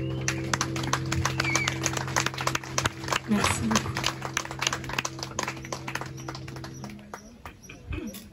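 A small audience applauding, with scattered claps, while the band's last chord rings on under it and dies away about seven seconds in.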